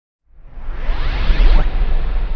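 A whoosh sound effect: a loud, swelling rush of noise over a deep rumble, with several sweeps rising in pitch. It starts about a quarter second in and peaks around a second and a half in.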